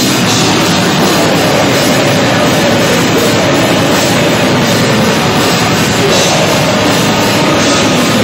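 Rock band playing loudly live: drum kit and electric guitars in a dense, unbroken heavy-rock wall of sound.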